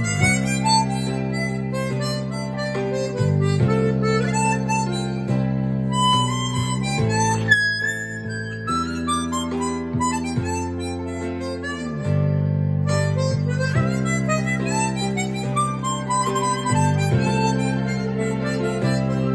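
A HOHNER 280-C chromatic harmonica plays a slow melody over a backing accompaniment of sustained chords.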